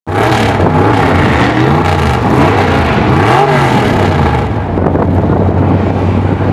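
Engine of a modified mud-bog truck revving in a few blips while standing still, then dropping back to a steady idle about four and a half seconds in.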